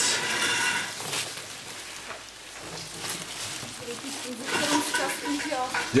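Wiring harness and bubble-wrap padding rustling as the bundle is pulled by hand, loudest in the first second, then a voice talking briefly near the end.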